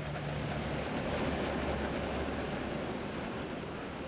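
Combine harvester running steadily while cutting grain, a dense, even machine noise with a low hum under it.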